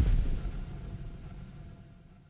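A deep boom sound effect hits at the start, followed by a low rumbling tail that fades steadily away over about two seconds: an end-logo sting.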